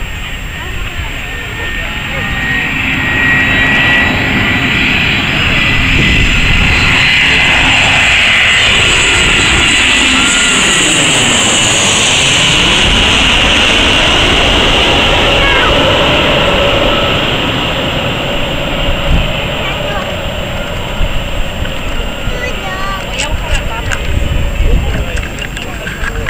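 A twin-engine Airbus A320-family jet airliner on landing approach passes low overhead. Its engine noise swells over the first few seconds and is loudest through the middle, with a high whine peaking as it passes directly above. It fades over the last several seconds.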